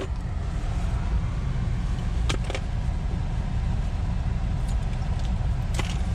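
Steady low rumble of a car engine idling, heard from inside the cabin, with a few sharp clicks of small metal parts being handled.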